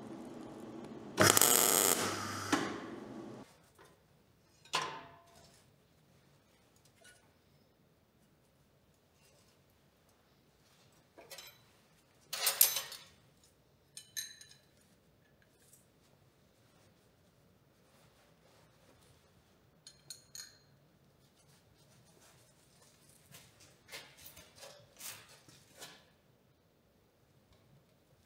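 A burst of electric arc welding on a steel exhaust pipe, starting about a second in and lasting about two seconds. After it come scattered metallic clinks and clicks as hand tools work at the clamped exhaust pipe and its clips, with a few quick ones near the end.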